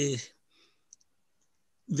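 A man's speech breaks off, leaving a short pause broken by one faint, brief click about a second in; speech resumes just before the end.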